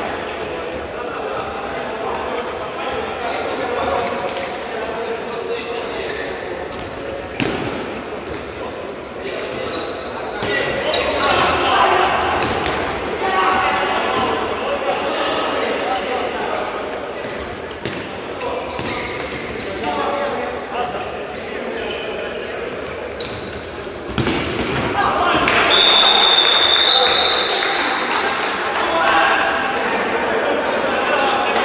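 Futsal match in an echoing sports hall: the ball thuds off feet and floor against a constant murmur of voices. About 25 s in the noise swells and a referee's whistle sounds steadily for about two seconds, marking a goal.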